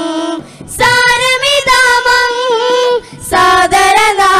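A group of singers singing a Malayalam Islamic devotional song together in long, wavering held notes, with a short breath pause about half a second in and another near the end.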